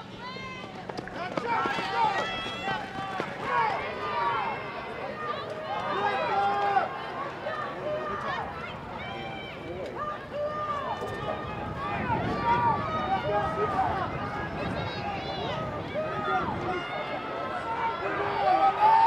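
Several voices shouting encouragement from the sidelines at runners during a 300-meter hurdles race, overlapping one another so that no words stand out.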